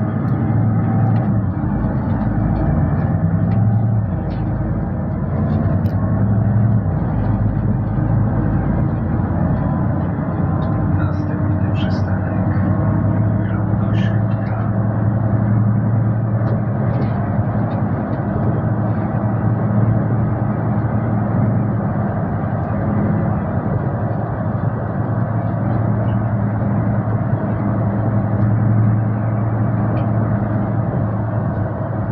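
Solaris Urbino 12 city bus heard from inside the cabin while driving: a steady engine and drivetrain drone with road noise, and a few light rattles near the middle.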